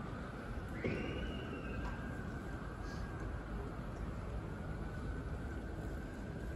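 Hushed ambience of a full football stadium crowd holding a minute's silence: a low, steady murmur of the stands with no chanting. About a second in there is a soft knock and a brief faint rising tone.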